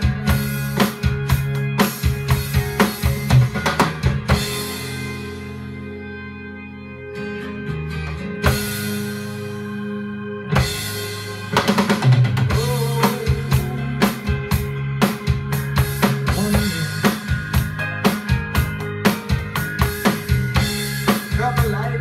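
Rock drumming on a Roland HD-3 electronic drum kit together with a rock backing track, with bass drum, snare and cymbal hits over bass and guitar. The drum hits thin out about four seconds in, leaving held chords, and the full beat comes back about eleven seconds in.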